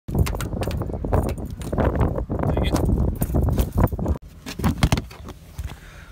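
Car keys jangling and clicking as a flip key is worked into a car door lock, with a few sharper clicks about a second later.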